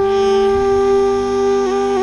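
Background score of long held notes, with a second, lower note joining about half a second in and a brief dip in pitch near the end.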